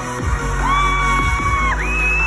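Loud electronic dance music from a live DJ set over a festival sound system, with heavy steady bass and a long held high note that slides near the end.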